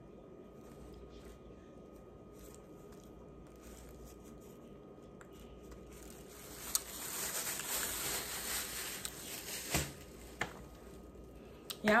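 Plastic bag crinkling for about three seconds, starting about halfway through and ending in a sharp click, with quiet room tone before it.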